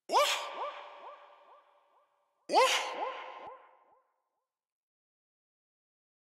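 A short swooping "whut" sample played twice, about two and a half seconds apart, each hit trailed by Waves H-Delay echoes that repeat about three times a second and fade out.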